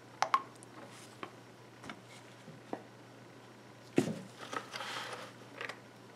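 Silicone spatula stirring thick soap batter in a plastic measuring cup: scattered light clicks and taps against the cup, then a louder knock about four seconds in followed by about a second of soft scraping.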